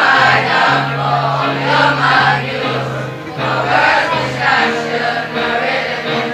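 A group of schoolchildren singing together in chorus, accompanied by a guitar playing low held notes that change about every half second.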